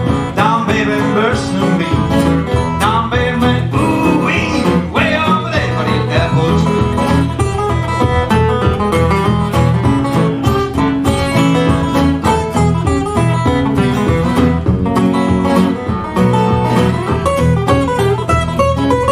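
Live blues instrumental break on two guitars, a resonator guitar and a flat-top acoustic guitar played together, with gliding notes in the first few seconds.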